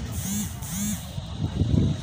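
Low wind rumble on the microphone, with two short high-pitched calls close together near the start.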